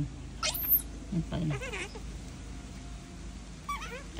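Baby monkeys making a few short high-pitched squeaks and calls, with one sharp, quickly rising and falling squeal about half a second in.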